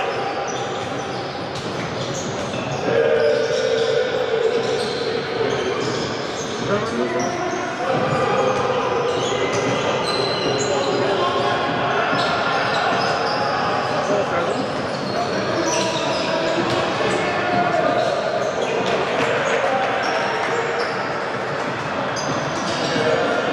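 A basketball bouncing on a hardwood court during live play, with voices from players and spectators carrying through the hall.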